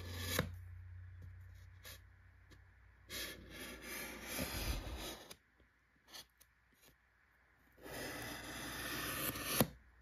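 Pencil point scraping along a scored groove in painted foam board, re-deepening a tile line, in two strokes of about two seconds each with a pause between.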